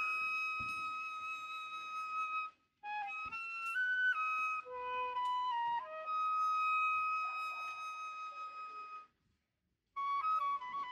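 Solo flute in a symphonic poem, playing a slow unaccompanied line. It holds one long high note, breaks off briefly, plays a short phrase of stepping notes, then holds another long note that stops about a second before the end.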